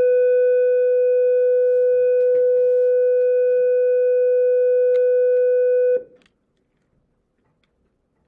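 A loud, steady electronic tone at one unchanging pitch, held like a long beep, cutting off suddenly about six seconds in.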